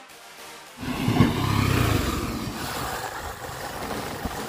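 Faint end of background music, then about a second in a KTM Duke 390 single-cylinder motorcycle is heard being ridden. It comes in suddenly and loudly, is loudest just after it starts, then runs steadily.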